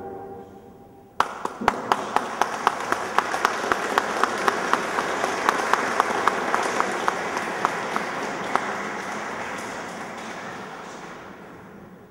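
A grand piano's final chord dies away, then audience applause breaks out about a second in, with sharp claps from someone close by standing out, and fades away near the end.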